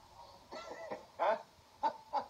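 Two men laughing, heard through a television speaker: short, breathy bursts of laughter, the loudest a little past a second in and another sharp one near the end.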